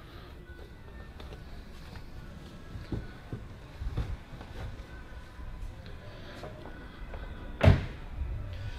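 A car door, the front door of a 2011 Volvo XC90, shut with a single solid thunk near the end. Before it come a few light knocks from handling things in the cabin.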